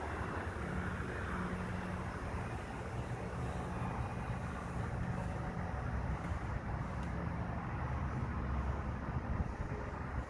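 Nissan D21 pickup's 2.0-litre four-cylinder engine idling steadily.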